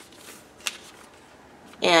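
A paper page of a B6 Stalogy notebook being turned by hand: a soft rustle, then one crisp snap about two thirds of a second in. A woman starts speaking near the end.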